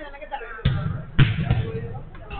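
A football struck twice on a five-a-side pitch: two sharp thuds about half a second apart, the second the louder, each with a short ringing after it.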